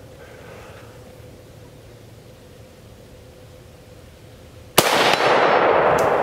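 After several seconds of quiet, a single loud shot from an Arsenal SAM 7 SF, an AK-pattern rifle in 7.62x39mm, near the end, followed by a long rolling echo.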